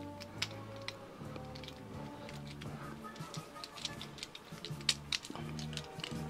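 Background music with steady low notes, over several sharp plastic clicks from a Transformers Studio Series Wheeljack figure's parts being turned and snapped into place during transformation.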